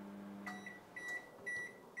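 An Iris Ohyama microwave oven's low running hum stops about half a second in, and the oven gives a series of high beeps, signalling that the heating cycle for a pack of rice has finished.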